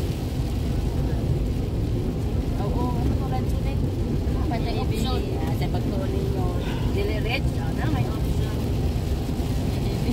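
Steady low rumble of a car's road and engine noise heard inside the cabin while driving on a wet highway, with faint voices talking underneath.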